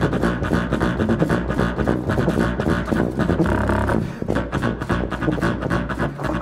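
Jazz duo music for tuba and low reeds: low, rhythmic, percussive playing with buzzing, vocal-like effects, and a held low tone a little past halfway.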